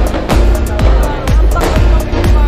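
Aerial fireworks going off in a rapid run of bangs and crackles, over loud music.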